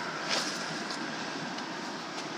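Steady rushing outdoor background noise, an even hiss with no distinct events.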